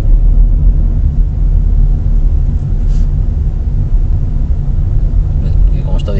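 Steady low rumble of a car driving slowly along a street, heard from inside the car: engine and road noise.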